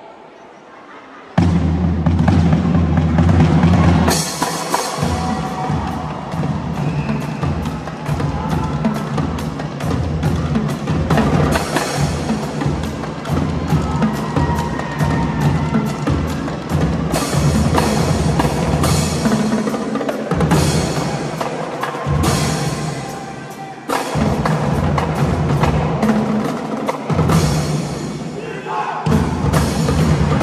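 Marching band drumline of snare drums and multi-drum tenor sets bursting in about a second and a half in with a loud held low opening, then playing a fast, steady drum cadence with dense rhythmic strokes, echoing in a large gym hall.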